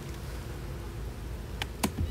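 Two sharp clicks near the end, from the beekeeper's smoker and hive gear being handled, over a low outdoor rumble and a faint hum of honeybees.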